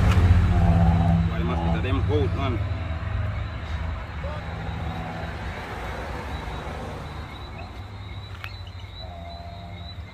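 Low engine rumble, strongest at the start and fading steadily over several seconds, with faint voices briefly about one to two and a half seconds in.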